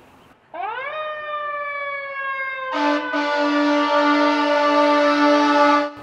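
A fire apparatus siren winds up sharply and then slowly falls in pitch. About three seconds in, an air horn joins with a long, steady blast, and both cut off suddenly just before the end.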